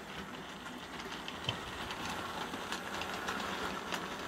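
Hornby OO-gauge model train running slowly around the layout track: a faint, even running noise with a few light clicks from the wheels on the rails, growing slightly louder.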